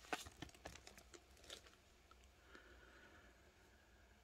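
Faint crinkling and tearing of a foil Donruss Optic trading-card pack being ripped open, a scatter of soft crackles in the first second and a half, then near quiet as the cards are drawn out.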